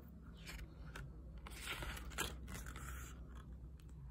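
A page of a picture book being turned: faint paper rustling and scraping with a few light taps, busiest about one and a half to two seconds in.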